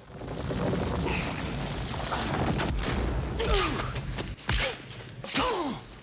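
The giant rolling boulder sound effect, built from the rear tyre of a station wagon coasting down a gravel road: a heavy, low rolling rumble that builds and runs for about four seconds. After it come a couple of low thuds and a few short falling cries.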